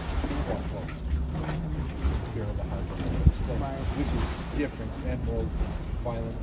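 Dragon's Mouth Spring, a hot spring in a steaming cave: water sloshing and splashing around inside with an irregular low rumble, and one sharp thump about three seconds in.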